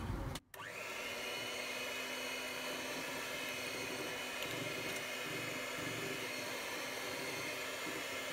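A handheld electric mixer running steadily with its beaters in chocolate brownie batter, blending in the oil. After a brief break about half a second in, its motor hum holds one even pitch.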